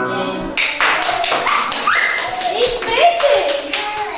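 Keyboard music stops about half a second in. Then hands clap in a quick, steady rhythm, about four claps a second, with voices calling out over the clapping.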